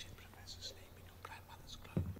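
Faint whispering from a group of students in a film soundtrack, breathy and without full voice.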